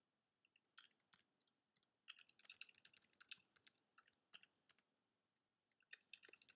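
Faint typing on a computer keyboard: a few keystrokes within the first second, a quick run of keystrokes from about two to three and a half seconds in, two more around four seconds, then a pause.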